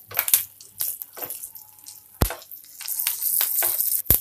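Green chillies and mustard seeds sizzling and crackling in hot oil in a frying pan as a spatula stirs them, with one sharp knock of the spatula on the pan about two seconds in.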